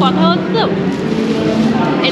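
A voice talking in the first half-second or so, over a steady low held tone with several steady higher tones that carry on through the rest, like background music.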